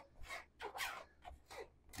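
Flexible plastic bowl scraper pressed and drawn across the extra-fine steel mesh of a drum sieve (tamis), forcing mashed potato through: a run of short, faint scraping strokes.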